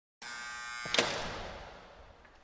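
Intro logo sound effect: an electric buzz, then a sharp impact hit about a second in that fades away in a long reverberant tail.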